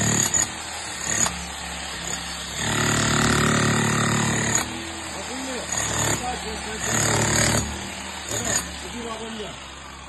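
Corded electric demolition hammer chiselling through a tiled concrete floor, run in bursts: briefly at the start, a run of about two seconds about three seconds in, then shorter bursts around six and seven seconds.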